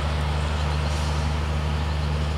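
Diesel locomotive engine running steadily, a low even drone that does not change.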